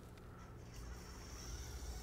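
Small electric drive motors inside Sphero robot balls whirring faintly as the balls roll across carpet, with a thin high whine coming in a little under a second in.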